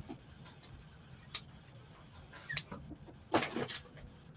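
Scissors working at thick denim: two sharp snips a little over a second apart, then a short rasping cut near the end. The blades are struggling with the heavy jeans fabric.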